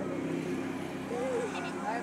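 A motor vehicle engine running steadily at a low hum, with faint voices over it.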